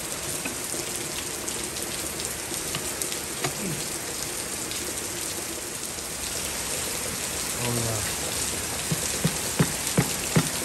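Steady rain falling, with a few light knocks near the end as a wooden handle is worked against the aluminium differential housing.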